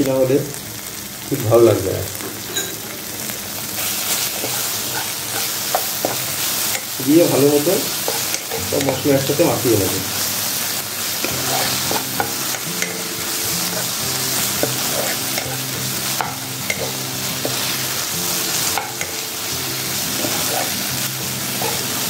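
Chopped onion and tomato masala sizzling in hot mustard oil in a nonstick wok, stirred and scraped with a steel spoon. Soft background music comes in about halfway.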